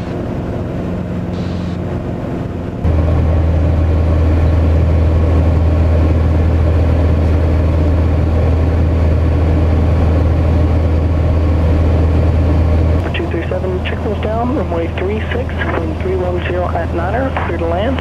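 Socata TB10 Tobago's engine and propeller droning steadily, heard inside the cabin in flight. The drone steps louder about three seconds in and drops back in the last five seconds, where voices come in over it.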